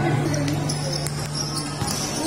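Basketball bouncing on the court floor a few times, faintly, over a steady low hum and background voices.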